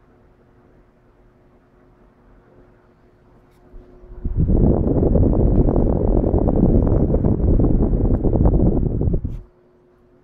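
Westinghouse Power Aire 16-inch desk fan running on low speed with a faint steady hum. About four seconds in, loud wind buffeting on the microphone as it is held in the fan's airstream, lasting about five seconds. Then the faint hum returns.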